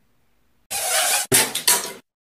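A glitch sound effect for a logo animation: a loud burst of harsh, crackling, clattery noise, then after a brief break two more shorter bursts, cutting off abruptly.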